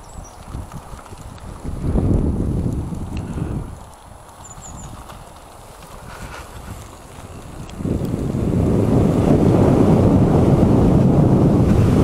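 Wind buffeting the microphone of a fast-moving electric bike: a short loud rumble about two seconds in, then a louder, steady rumble from about eight seconds in as the bike gathers speed.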